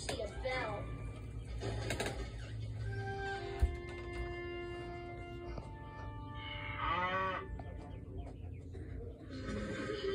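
Cartoon soundtrack played from a TV speaker and heard in the room: held music notes, then a cartoon cow mooing once about seven seconds in. A single short thump sounds about a third of the way through.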